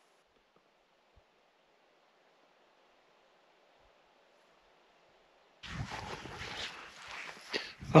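Near silence for about five and a half seconds, then a low rustling noise with a few soft knocks.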